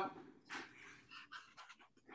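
A few faint, soft breaths picked up by a microphone.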